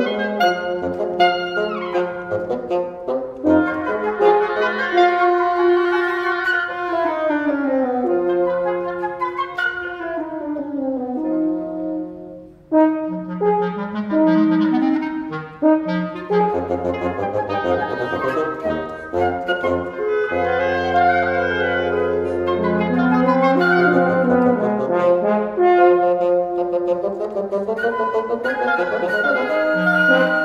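Woodwind quintet of flute, clarinets, French horn and bassoon playing dense contemporary chamber music of overlapping held notes. Several lines descend together from about six to twelve seconds in, the sound thins briefly near twelve seconds, and a low note is held underneath from about seventeen to twenty-three seconds.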